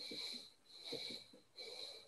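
Faint breathy puffs from a person at a video-call microphone, coming about every 0.7 s, each with a thin whistling tone.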